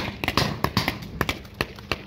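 Paintball markers firing a fast, irregular string of about a dozen sharp pops as players exchange shots.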